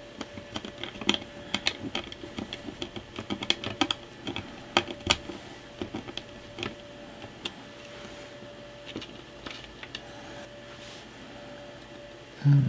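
Small clicks, taps and scrapes of a small screwdriver and screws against a plastic case and circuit board as a Raspberry Pi 4 is screwed into its case. The clicks come thick and quick for the first several seconds, then thin out to a few.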